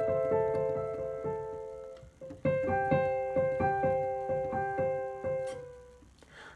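Digital piano playing a slow melody of evenly repeated single notes, about three a second: one phrase breaks off about two seconds in, a short pause, then the same phrase is played again and its last note dies away near the end.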